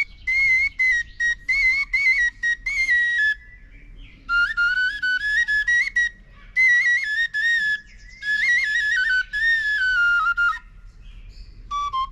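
Tütək, the Azerbaijani wooden shepherd's pipe, played solo: a high folk melody in short ornamented phrases with quick trills and separately tongued notes, broken by a pause a few seconds in and another near the end. The later phrases sit lower in pitch.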